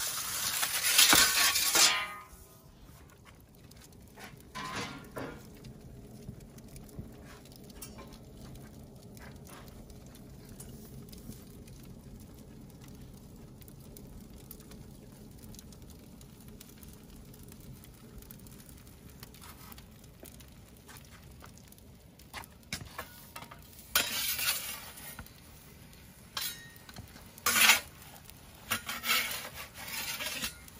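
A metal pizza peel scrapes across the brick oven's stone floor as the pizza is launched, loud for about the first two seconds. Then a wood fire burns steadily with faint crackles, and near the end a metal turning peel scrapes on the oven floor a few times as the pizza is moved.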